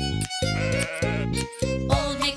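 Bouncy children's background music, with a sheep bleating over it.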